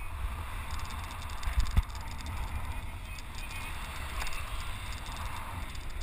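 Steady low rumble and hiss of a boat under way at sea, with a single brief thump about two seconds in.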